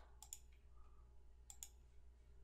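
Faint computer mouse clicks over near silence: two clicks about a second and a half apart, each a quick press and release.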